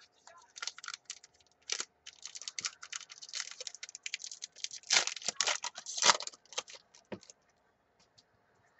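Foil wrapper of a 2015 Select AFL Champions trading-card pack crinkling and tearing as it is opened by hand: a dense run of sharp crackles, loudest near the end, that stops shortly before the end.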